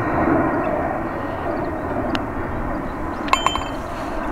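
A short putt on a golf green: the putter taps the ball about two seconds in, and about a second later the ball drops into the cup with a quick rattle of clicks and a brief ringing clink, over a steady rumbling background noise.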